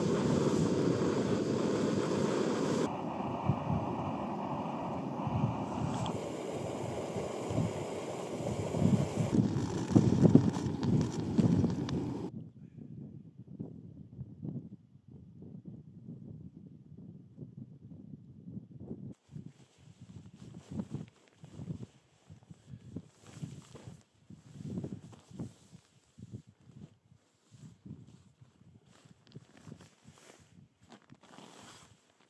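A steady rushing noise that stops abruptly about twelve seconds in. After that it is much quieter, with soft, irregular rustling and handling sounds.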